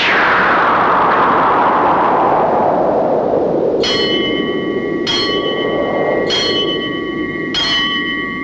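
A rushing swell of noise that slowly falls in pitch and fades, then a bell struck four times, about once every 1.2 seconds, each stroke ringing on.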